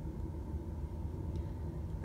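Steady low rumble of background room noise, with no distinct events.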